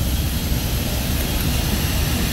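Steady machinery roar with a heavy low rumble and no distinct rhythm or change.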